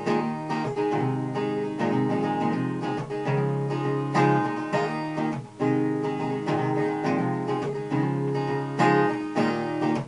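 Cutaway acoustic guitar strummed in a steady chord rhythm, with a brief drop about halfway through before the strumming picks up again.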